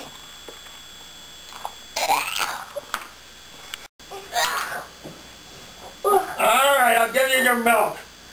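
A person whimpering and whining in protest at a swallow of bad-tasting medicine: short whines about two and four seconds in, then a longer, wavering wail near the end.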